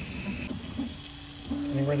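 Original Prusa i3 3D printer running a print, its stepper motors giving off steady whining tones that change pitch in steps as the print head moves. A high tone stops about half a second in, and a lower tone takes over near one second.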